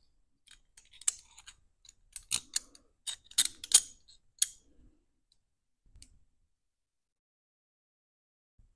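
Handling clicks and light metal taps as a small copper sheet jaw and screw are fitted onto the jaw of a pair of locking pliers: a quick run of sharp clicks for the first few seconds, the loudest about halfway through, then a soft bump and quiet.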